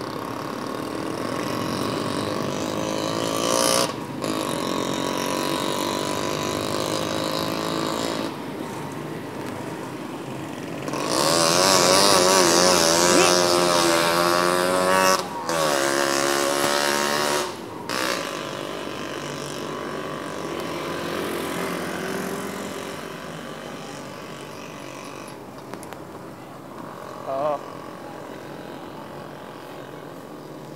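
Busy city traffic heard from a moving bicycle. A motor vehicle engine runs with a wavering pitch, loudest for several seconds in the middle.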